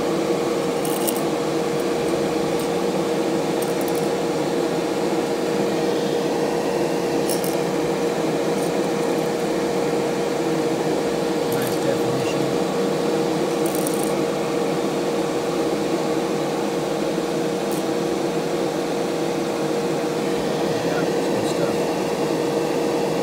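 A ventilation fan running steadily with a constant hum, joined by a few faint ticks.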